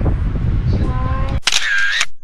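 Low room noise with faint background voices, then about 1.4 s in a camera-shutter sound effect lasting under a second, as the picture cuts to a snapshot.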